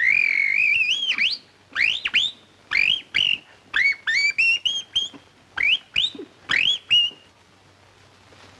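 Canary-like whistled chirps: a long wavering whistle, then a string of short upward-sweeping tweets about two a second, stopping near the end.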